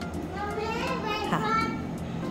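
Voices only: a woman speaking briefly, with children's voices in the background.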